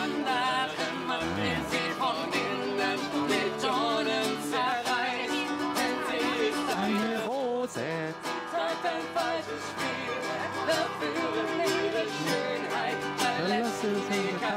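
A woman and a man singing a folk-style song to a plucked lute accompaniment.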